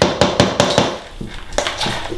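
Metal spoon knocking and scraping mayonnaise out of a jar, and utensils clinking against a stainless steel mixing bowl. A quick run of sharp knocks fills the first second, and a few more come near the end.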